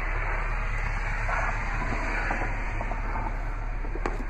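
Steady background rumble and hiss with a constant low hum underneath, unchanging throughout.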